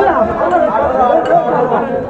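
People talking over one another: busy market chatter.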